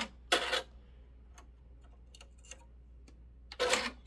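Light clicks and ticks from handling a 10-needle embroidery machine while it is threaded by hand. There is a short, louder clack about a third of a second in and a few sharper bursts near the end.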